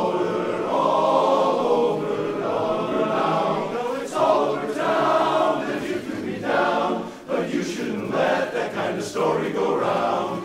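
Men's barbershop chorus singing a cappella in close four-part harmony, many voices together, with a short break between phrases about seven seconds in.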